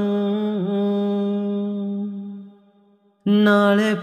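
A devotional shabad singer holds one long sung note, with a slight dip in pitch under a second in. The note fades out about two and a half seconds in. After a brief silence the voice comes back in loudly just before the end.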